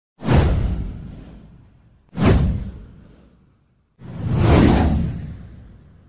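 Three whoosh sound effects in a news channel's title intro, about two seconds apart. The first two hit suddenly and fade away. The third swells in more gradually before fading.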